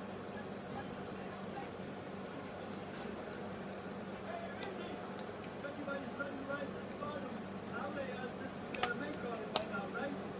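A few faint, sharp clicks of small metal parts being handled as wrapped Kanthal coil leads are fitted into the posts of a rebuildable atomizer deck, over a low steady room hum.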